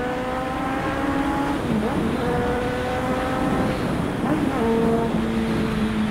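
Honda CB600F Hornet's inline-four engine heard from the rider's seat while riding, its pitch climbing slowly under acceleration, dropping briefly about two seconds in and climbing again, then holding steady near the end, with wind and road noise underneath.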